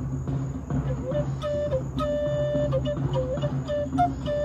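G minor red cedar Native American flute starting to play about a second in, holding long notes with short dips between them. Drumming from a drum circle sounds in the background.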